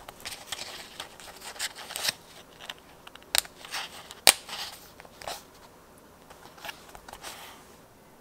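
Tweezers picking small glossy heart stickers off a plastic sticker sheet and pressing them onto a paper journal page: a run of light clicks, taps and crinkles, the sharpest click about four seconds in.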